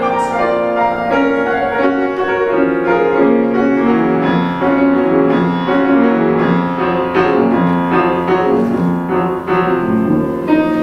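Grand piano playing an instrumental passage of a classical art-song accompaniment, with no voice.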